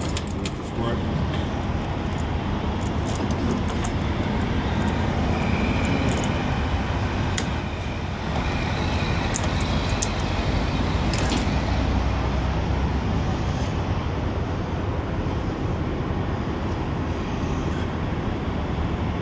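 Steady low rumble of an idling diesel truck engine, with scattered sharp clicks and clinks of hand tools on the air-line fittings, most of them in the first half.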